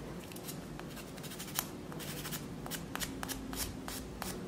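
Small 3D-printed resin model kit parts being handled: faint, irregular light clicks and ticks as the hard little pieces are picked up and touch one another and the cutting mat.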